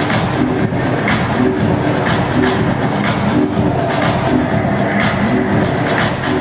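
Electronic dance music from a DJ set played loud over a club sound system: a steady kick drum about two beats a second under a repeating low synth riff.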